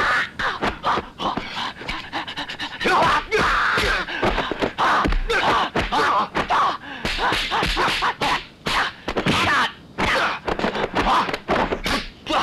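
Martial-arts fight sound effects: a quick, irregular run of punch and kick whacks, with the fighters' shouts, grunts and pained cries of exertion between them.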